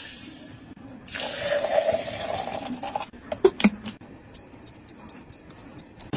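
Dry grain pouring into a glass blender jar, then a couple of clicks, then six short high electronic beeps from the blender's touch control panel as it is pressed.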